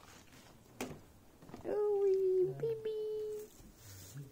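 Cattle mooing: one drawn-out call held at a steady pitch for nearly two seconds, with a short break midway, preceded by a brief knock.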